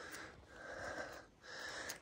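A person breathing, three faint breaths in quick succession.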